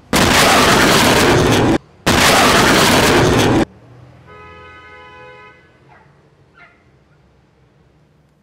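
Space Shuttle double sonic boom: two very loud booms about two seconds apart, each rumbling on for about a second and a half and then cutting off sharply. A brief steady tone follows a couple of seconds later.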